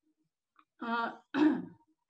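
A woman clearing her throat: two short voiced bursts, about a second in, the second one louder.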